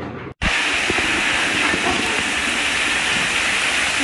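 A loud, steady rushing hiss that starts abruptly about half a second in, right after a brief cut to silence.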